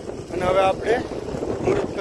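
Wind buffeting the microphone, making a steady low rumble, with a man's voice speaking briefly over it.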